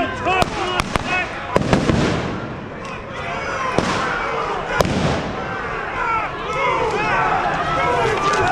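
A string of sharp explosive bangs, about half a dozen in the first five seconds, with a crowd shouting between them.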